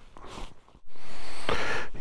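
A faint breath, then after a short break a steady rushing noise from about a second in: wind and road noise on the camera microphone of a motorcycle under way on gravel.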